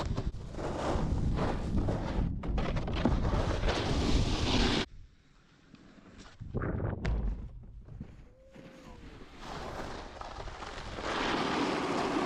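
Wind buffeting an action camera's microphone, mixed with the scrape of a snowboard sliding over snow. The noise is steady for about five seconds, drops suddenly to near quiet, returns in a short burst, then comes back steady near the end.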